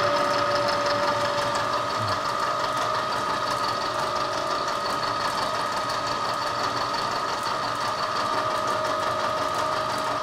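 Milling machine with a shell cutter taking a 25-thousandths pass across a steel steering arm: a steady cutting noise with a constant two-pitched whine. The cut is running smoothly and leaving a good finish.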